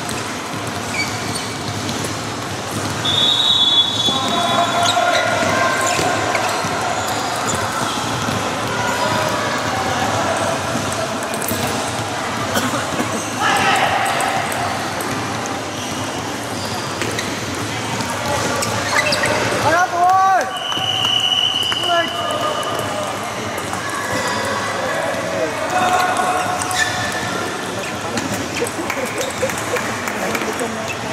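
Table tennis balls repeatedly clicking off bats and the table in a hall, with voices chattering in the background. A couple of brief high squeaks stand out.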